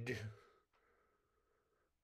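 A man's voice trailing off at the end of a spoken phrase into a breathy exhale, then near silence with one faint click under a second in.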